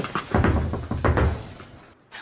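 Hand banging on a wooden door: a quick run of heavy thumps starting about a third of a second in and lasting about a second, with a few lighter taps before it.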